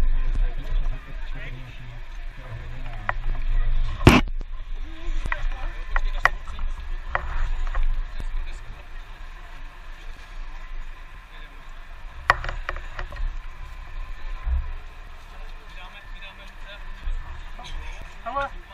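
Close handling noise at a car-crash rescue: a low, uneven rumble on the microphone with scattered knocks and clicks of rescue gear and a plastic spinal board being moved, the loudest a sharp knock about four seconds in.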